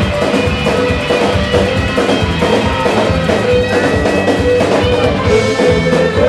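Live samba-reggae band playing: hand drums keeping a steady rhythm under electric guitars, loud and continuous.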